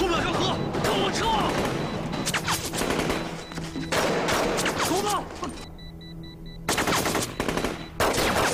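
Battle gunfire from a war drama's soundtrack: dense, rapid rifle and machine-gun fire with shouting and music underneath. The firing breaks off for about a second, about three-quarters of the way in, and a few short high beeps are heard in the gap.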